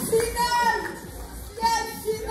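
Children's voices shouting in a large hall: two short, high-pitched calls, one at the start and one near the end.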